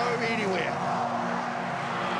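Brief voices in the first half second, then a steady background of held music tones.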